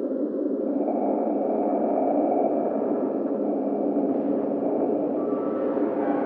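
Dark ambient drone of an abandoned-building soundscape: a steady, dense low hum with faint, drawn-out tones drifting over it. A thin higher tone comes in about a second in, and another faint tone enters shortly before the end.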